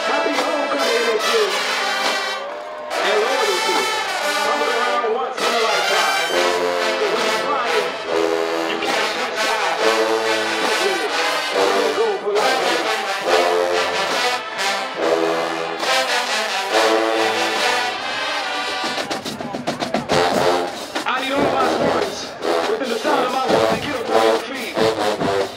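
Marching band brass section playing loud chords, with a run of repeated short brass chords through the middle of the passage.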